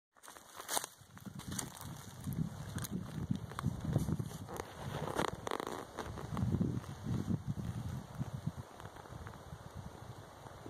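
A cat digging at the base of a rotten stump, its paws scraping and scratching through soil and forest litter in irregular spells, with twigs crackling and snapping.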